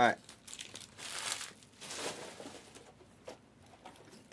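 Plastic wrapping on trading-card boxes and packs crinkling and tearing as they are opened by hand, in a few short rustles.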